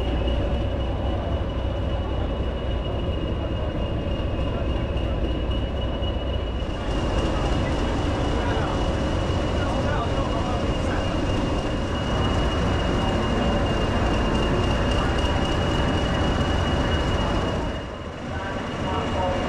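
English Electric Class 20 diesel locomotive's eight-cylinder 8SVT engine idling while the loco stands at a platform: a steady, loud low rumble with a constant high whine over it.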